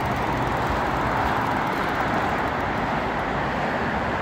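Road traffic noise: a steady wash of vehicles on a busy main road.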